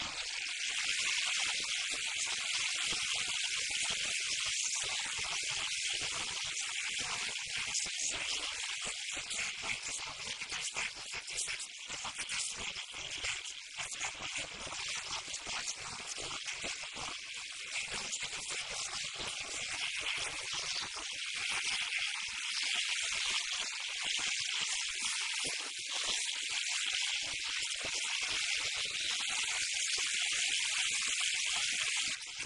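Steady high-pitched hiss, the noise floor of an old VHS recording of a TV broadcast, with only faint, broken sound beneath it and no commentary.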